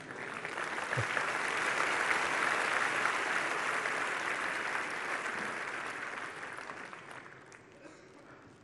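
Audience applauding. The clapping swells over the first second, holds, and dies away near the end.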